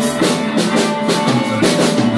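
Live rock band playing, with the drum kit loud in front: quick bass-drum and snare hits over a sustained electric guitar.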